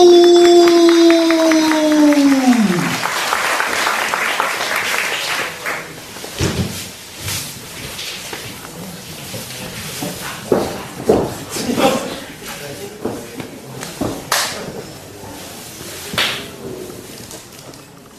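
A ring announcer's long drawn-out call, one held note that falls away about three seconds in, then a short burst of applause from a small crowd in a hall, followed by scattered claps and thuds.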